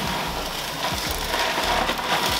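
Black-and-white GloFish aquarium gravel pouring from its bag into a dry glass tank: a steady rush of small stones rattling onto the gravel bed.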